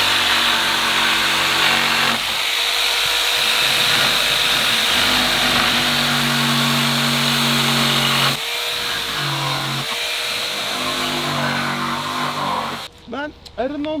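Handheld electric power tool running under load as it is worked along the tops of wooden fence pickets: a loud, steady motor whine whose pitch shifts a few times as the pressure on the wood changes. It cuts off near the end, and a man's voice follows.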